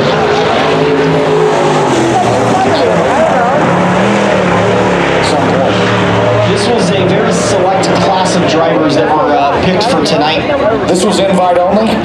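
Dirt-track modified race cars running on the track, a mix of engines whose pitch rises and falls as they pass, with short crackles from about halfway on.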